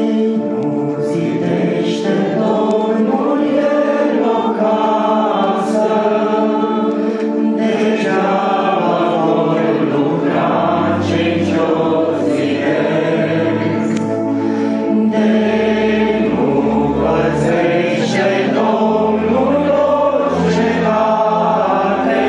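A congregation singing a Romanian hymn in unison, accompanied by an electronic keyboard and a piano accordion holding sustained chords under the voices. Low bass notes from the keyboard come in now and then in the second half.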